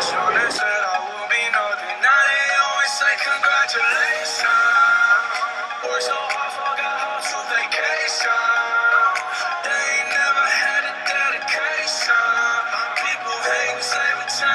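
Pop song with a male lead vocal over a steady beat.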